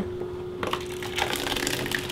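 Thick, lumpy slurry of gelatin soaked in cold water pouring out of a plastic bucket into a plastic tub: a wet, crackling splatter that starts about half a second in and grows busier toward the end.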